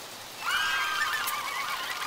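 Animal calls, several overlapping, wavering high-pitched cries that start suddenly about half a second in and keep going.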